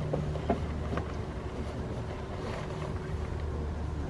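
A steady low rumble, with a few sharp crunches in the first second as goats bite into apple.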